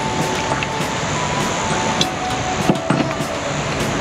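Steady rush of wind and surf noise on the beach, with soft background music under it. A few light knocks come about two to three seconds in.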